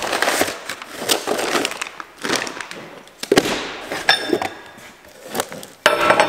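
A cardboard box being opened and its packing paper rustled and crinkled, with handling knocks. There is a brief metallic clink near four seconds in and a sharp knock near the end as metal parts come out of the box.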